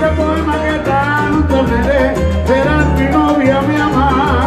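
Live salsa band playing loudly, with congas and a pulsing bass line under wavering melody lines.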